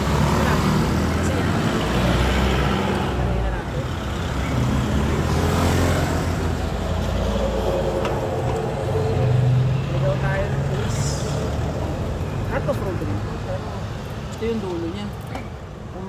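Street traffic of cars and motorcycles passing close by, heard from a moving bicycle, over a heavy, steady low rumble.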